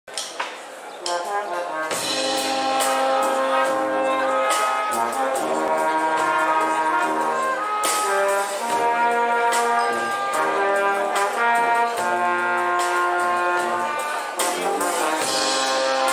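Street brass band of trumpets, trombones and tubas playing a tune over a drum kit's steady beat. It starts softly and the full band comes in about two seconds in.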